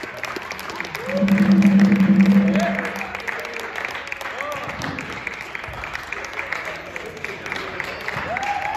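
Applause with scattered cheers and shouts, and one loud held shout from about one second in to nearly three seconds.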